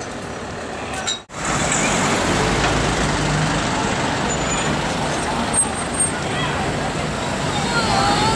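City street traffic noise with a car engine running at low speed in slow traffic, and voices of passers-by. The sound cuts out briefly about a second in, then the traffic noise comes back louder.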